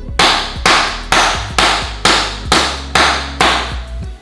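Rubber mallet striking a luxury vinyl plank, eight hard, even blows about two a second, driving the plank's click-lock joint fully closed.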